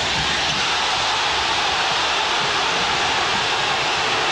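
Large basketball arena crowd cheering, a steady, loud din with no let-up.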